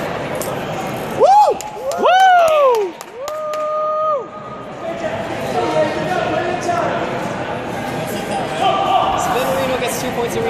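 Two loud rising-and-falling shouts about one and two seconds in, then a steady held shout, with sharp slaps of kicks landing on taekwondo body protectors among them. Crowd chatter runs through the big gym hall underneath.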